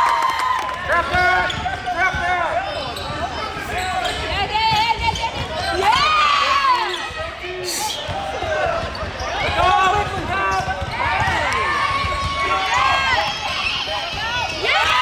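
Basketball game in play on a hardwood gym floor: the ball bouncing, sneakers squeaking in short chirps, and voices calling out on and around the court.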